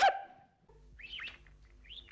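A short, loud yelp right at the start, then birds chirping twice over a steady low hum.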